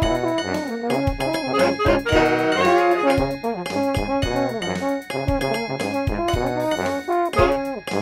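Brass-band style instrumental music: layered saxophone and sousaphone parts playing a busy, riffing tune over a steady, punchy beat.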